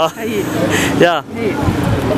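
Short bursts of conversational speech from a street interview, over a steady haze of outdoor street noise.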